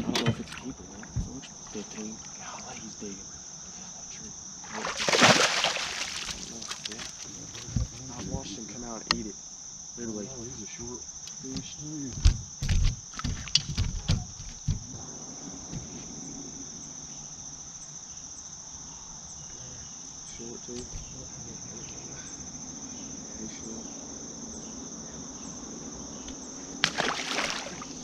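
Insects chirring steadily in a high, unbroken drone, with scattered knocks and thumps on the boat deck in the first half, and two short loud bursts of noise, one about five seconds in and one near the end.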